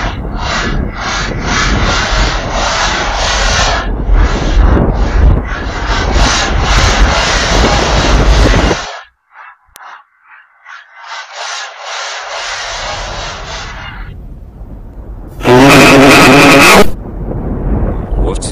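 Heavily distorted audio of a Klasky Csupo logo played backwards: a loud, harsh rasping noise for about nine seconds, a short break, a softer hiss, then a very loud, harsh tone lasting about a second and a half near the end.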